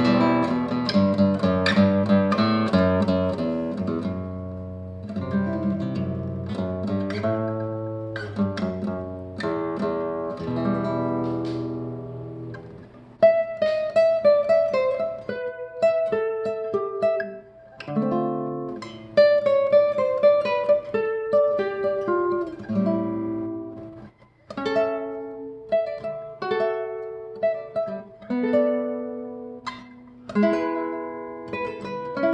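A 1974 Manouk Papazian nylon-string classical guitar being played: plucked notes and chords ringing and dying away. Fuller low chords come first, then a higher melody line picks up with sharp attacks about halfway through, with a brief pause about three quarters of the way in.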